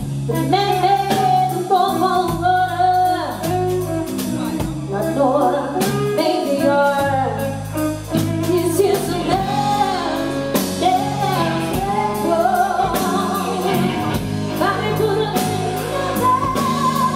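Live soul band: a woman sings a slow, bending vocal line over electric guitar, bass guitar and drums.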